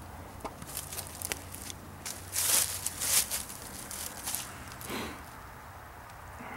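Footsteps and rustling in dry fallen leaves and loose soil: a few irregular steps and scrapes, loudest about two to three seconds in.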